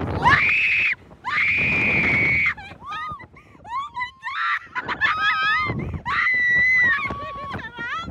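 Two women screaming on a reverse-bungee slingshot ride just after launch: two long, high held screams, then shorter wavering yelps and screams mixed with laughter. Wind rushes across the microphone beneath the voices.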